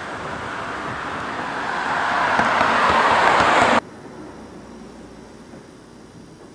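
A car approaching on the street, its road noise swelling steadily louder, cut off abruptly nearly four seconds in; faint room tone follows.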